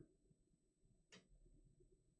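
Near silence: room tone, with one faint click about a second in from a trading card being handled.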